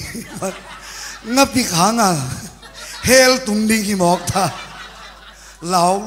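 A man laughing and chuckling into a handheld microphone, in several short bursts broken by a few spoken syllables, with one longer laugh about three seconds in.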